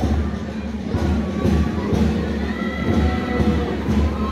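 School marching band playing, drums beating a steady rhythm, over the noise of a crowd.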